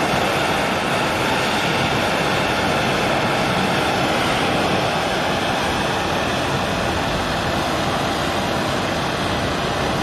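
Hand-held propane torch burning with a steady rushing noise, its flame played into a PVC pipe cast in a concrete wall to heat it until it softens and breaks loose.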